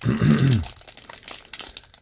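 A person clearing their throat, then the faint crinkling and tearing of a foil trading-card pack wrapper being peeled open by hand. The throat clear is the loudest part, in the first half second.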